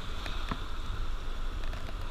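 Water swirling and lapping in a plastic gold pan as black sand is panned down, over a steady rush of river water.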